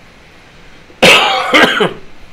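A man coughing: a loud, sudden burst about a second in, lasting under a second.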